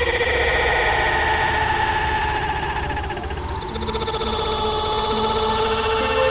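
Electronic music: held synthesizer chords over a low, pulsing bass, with no drums.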